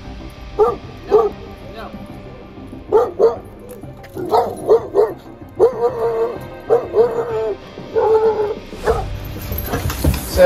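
A five-month-old coonhound barking repeatedly, short barks at first and longer, drawn-out barks from about halfway through. It is the reactive barking of an insecure young dog that barks at people and dogs that come close.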